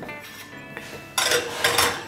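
Metal muffin tins clattering and scraping on the oven rack as they are pushed into the oven, starting about a second in, over faint background music.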